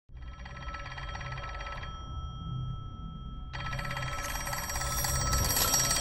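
A telephone bell ringing twice, each ring a fast metallic trill: the first lasts about two seconds, and the second starts about three and a half seconds in.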